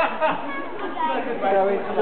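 Several people chattering, with a laugh near the end.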